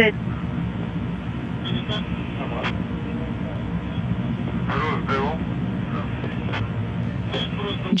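Steady rumble and hiss of a narrow-band radio channel from the Soyuz capsule during ascent, with a few faint, clipped voice fragments in it.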